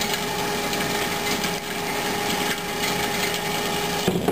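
The bicycle generator stand's DC permanent-magnet motor spins by itself, turning the belt and the bike's rear wheel with a steady whine over an even whir. With no blocking diode in the circuit, the 12 V battery is feeding current back into the generator and running it as a motor, which drains the battery.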